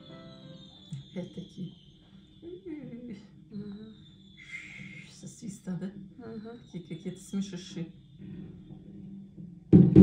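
Fireworks over a city: scattered pops and crackles with a few faint high whistles falling slightly in pitch, then a loud firework burst just before the end.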